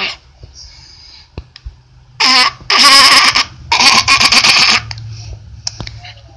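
A person laughing or squealing loudly in three breathy bursts, between about two and five seconds in.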